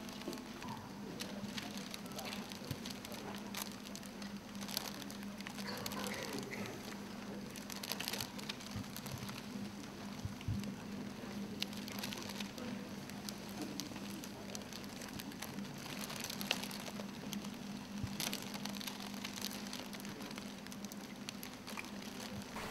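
Room ambience of a large hall: a steady low electrical hum under a faint hiss, with scattered sharp clicks and crackles throughout and faint indistinct murmuring.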